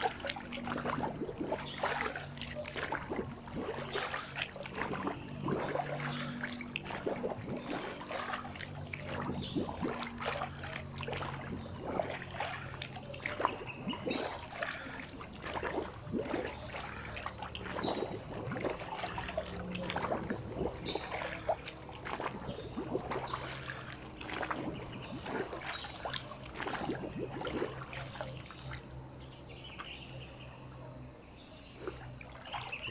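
Pool water splashing and lapping at the edge close to the microphone as a swimmer bobs, repeatedly sinking under and surfacing, in a steady irregular stream of small splashes.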